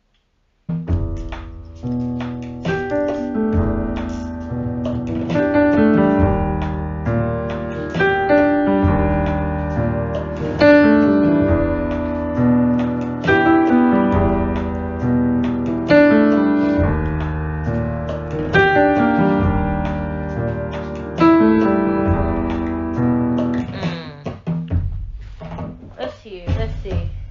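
Keyboard with an electric-piano sound playing slow sustained chords, a new chord struck about every two and a half seconds, starting just under a second in after a brief silence.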